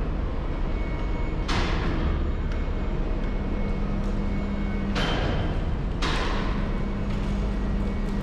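Ash-pit crane at a refuse incinerator running: a steady low machinery rumble with a motor hum that comes in about three seconds in and again near the end. Three sudden noisy bursts, each dying away within about half a second, come about one and a half, five and six seconds in.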